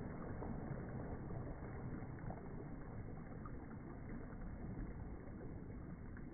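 Steady low rushing noise of wind and water, with a few faint ticks.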